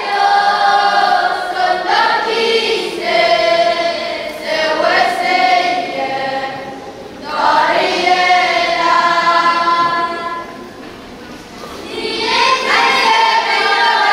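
A choir of young teenage boys and girls singing together, holding long notes phrase by phrase, with a brief pause about eleven seconds in before the next phrase starts.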